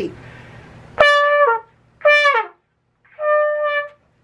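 Trumpet played with too much push: three short high notes, starting about a second in, the first two sagging down in pitch as they end and the third held a little steadier. This is an example of pushing hard so that only high notes come out and the pitch is not held.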